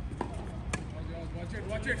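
Tennis ball being struck and bouncing on a hard court: two sharp pops within the first second, then voices in the second half.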